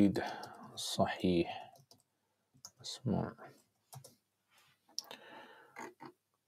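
Scattered clicks from a computer mouse and keyboard, with a few low mumbled words in between.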